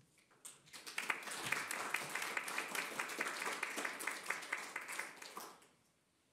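Audience applauding: dense clapping that starts about a second in, holds steady, and fades out shortly before the end.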